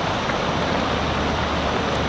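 Steady hiss of a portable gas camp stove burner under a pan of boiling crawdads and potatoes, with a low steady hum beneath it.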